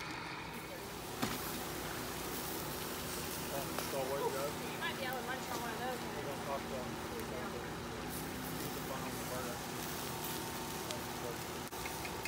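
Hamburger patties sizzling on a charcoal fire-pit grill: a steady hiss with a low hum underneath, and one sharp click about a second in. Faint voices talk in the background.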